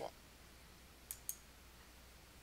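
A computer mouse button clicking twice in quick succession about a second in, sharp and high, over near silence.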